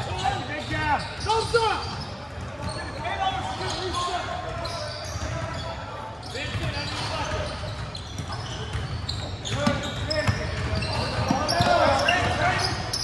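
Basketball game play on a hardwood gym floor: a ball bouncing and short sharp squeaks, most likely sneakers, echoing in the gym with indistinct voices. The activity is busiest near the start and again in the last few seconds.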